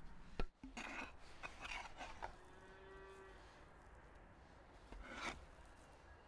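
A steel cleaver scraping and scooping minced meat on a wooden chopping block in short bursts, near the start and again near the end. A faint cow moos once, about two and a half seconds in.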